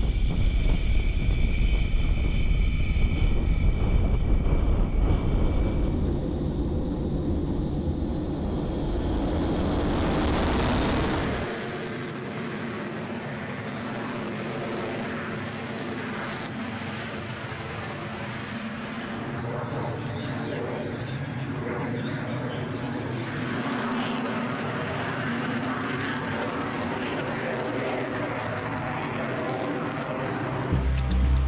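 Lockheed U-2's jet engine heard with heavy wind rumble on the microphone, with a high steady whine that fades about six seconds in. About eleven seconds in the sound changes abruptly to a quieter, steady jet engine noise without the rumble.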